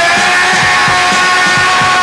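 Punk rock band playing live: the drum kit keeps a fast, steady beat under a long held note, loud throughout.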